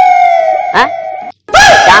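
A voice holding one long, high note that slowly falls in pitch and fades, then cuts off abruptly.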